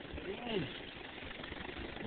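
A short murmured 'mm' from a person about half a second in, over a faint, steady low rumble.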